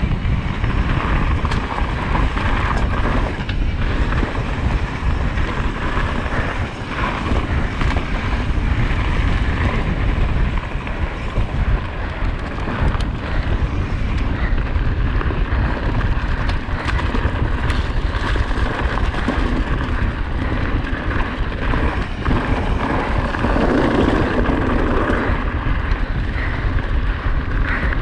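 Wind rushing over the microphone and mountain bike tyres running fast over a dirt trail, with frequent clicks and rattles as the bike bounces over rough ground.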